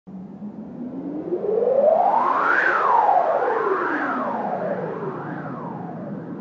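Electronic synthesizer tone sweeping up in pitch for about two and a half seconds and then falling back, with more overlapping rising and falling sweeps after it, over a hissing noise bed. It grows louder over the first two seconds.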